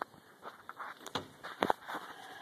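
Handling noise: a few sharp knocks and rustles, the loudest pair near the end, as a heavy leather work glove is pulled on.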